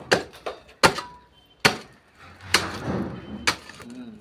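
Short-handled hoe chopping into hard, dry soil: about five sharp strikes at uneven intervals, with a scrape of loose earth between them.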